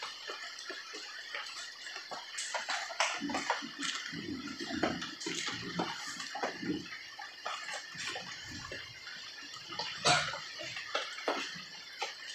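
Soft, irregular rustling and light clicks and knocks of potted plants being handled close to the microphone, with a few dull thumps in the middle.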